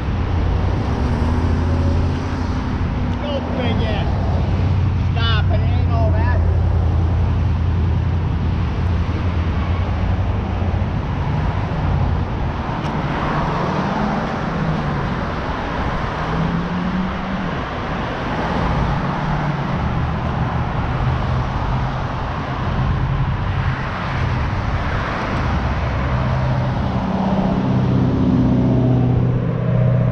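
Road traffic: cars passing on a multi-lane road, with engine and tyre noise over a steady low rumble. A few short, wavering higher-pitched sounds come about three to six seconds in.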